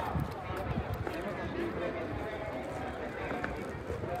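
Footsteps of someone walking on pavement, with faint voices of people around.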